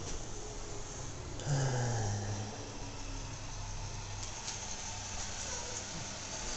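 A man's low groan, falling in pitch, about a second and a half in, over a steady low hum.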